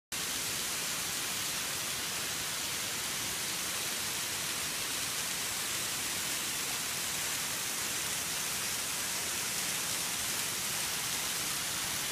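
A waterfall's streams cascading down steep rock faces: a steady, even, hissing rush of falling and splashing water.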